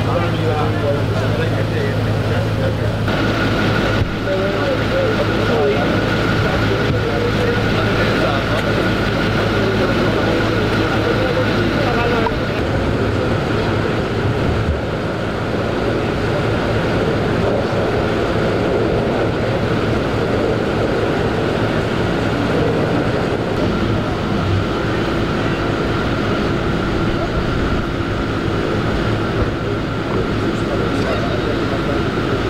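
Street ambience: a low engine hum from idling vehicles with indistinct voices in the background and, for stretches, a steady high-pitched tone. The background shifts abruptly a few times.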